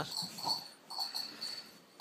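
A malamute's soft huffs and snuffles as it plays with a chew toy: a few short, faint breaths spread over two seconds.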